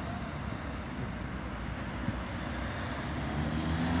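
Steady traffic hum with a van approaching, its road noise growing louder near the end.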